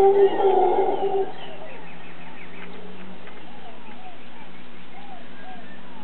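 A mantled howler monkey gives a deep, rough roar that fades out about a second in. Short bird calls follow, often in pairs, with a brief higher twittering of birdsong.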